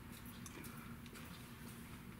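Quiet room tone with a steady low hum and a few faint, scattered clicks.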